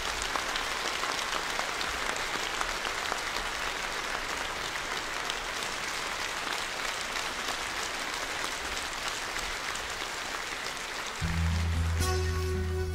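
Audience applauding steadily for about eleven seconds after a song ends. Near the end, instrumental music comes in as the next song starts.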